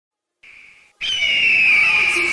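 Logo-intro sound effect: a short faint high tone, then about a second in a loud rushing whoosh carrying a high whistling tone that slowly falls in pitch.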